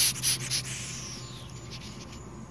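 A plastic bottle of powdered tomato dust being shaken: three quick swishes of powder in the first half second, then a fading hiss.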